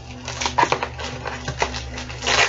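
Tape and packaging crackling and tearing in irregular bursts with small clicks as a metal batarang taped to the top of a cardboard box is pulled free.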